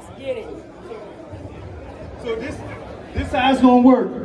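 Speech only: people talking, with the echo of a large hall. Near the end, one voice calls out loudly.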